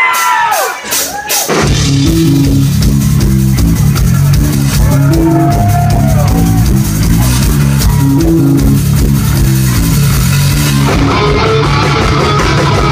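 Thrash metal band playing live: distorted electric guitars, bass and drum kit crash in together about a second and a half in, right after a short falling pitched wail, and keep up a heavy riff that changes near the end.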